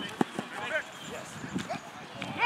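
Short, distant shouts and calls from football players on an open field, with two sharp knocks in the first moments.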